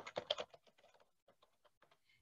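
Typing on a computer keyboard: a quick run of key clicks in the first half second, then fainter, scattered taps.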